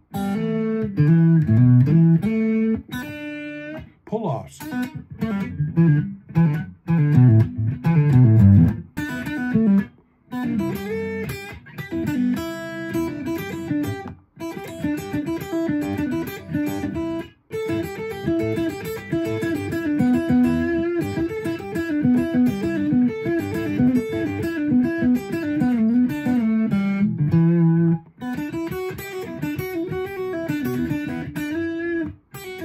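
Semi-hollow Telecaster-style electric guitar playing E minor blues phrases in open position, with trills, hammer-ons and pull-offs. The phrases are broken by short pauses.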